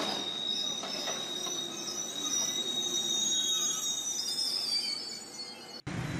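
A train passing, its wheels squealing on the rails in high, steady thin tones over the rumble of the cars; the sound cuts off suddenly near the end.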